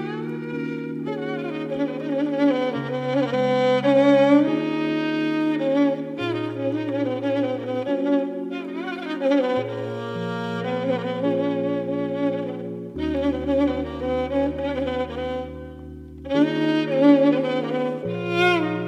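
Solo violin playing a slow, Turkish-style melody with wide vibrato and slides between notes, over sustained low chords that change every couple of seconds. The music thins briefly about two seconds before the end, then the violin comes back in.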